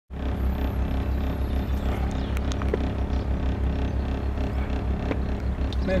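Motor boat's engine running at low speed, a steady low throb with an even pulse.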